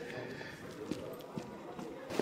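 Quiet background with faint voices and a few soft taps, about a second in and twice more near the end.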